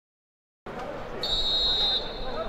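Silence, then stadium crowd noise cuts in; a little over a second in, a referee's whistle blows one steady high note that lasts most of a second, the signal for kick-off.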